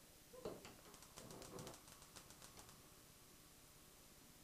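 Faint, rapid clicking of a gas range's spark igniter, several clicks a second, as the burner is lit under the pot, after a soft knock from the pot or knob.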